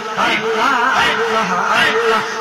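Male voices singing a devotional zikr chant into a microphone, the lead voice wavering up and down in pitch.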